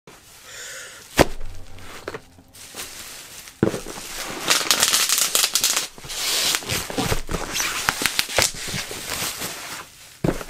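Bubble wrap crinkling and rustling as it is handled around a cardboard box, with a few sharp clicks and snaps; the rustling is loudest and densest in the second half.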